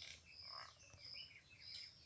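Faint background chirps of small birds, short and high, over a thin steady high-pitched tone.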